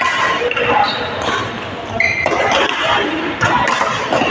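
Badminton rally in a large echoing hall: sharp racket hits on the shuttlecock and shoes stamping and squeaking on the court floor, over people talking in the background.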